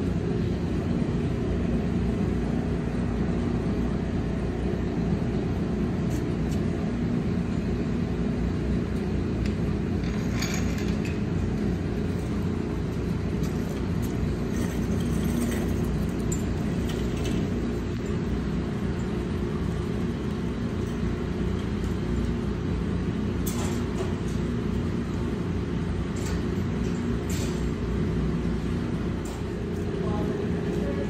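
A steady low background hum, with a few faint light clicks and rustles as a magnetic oil drain plug caked in metal sludge is handled and wiped on a shop towel.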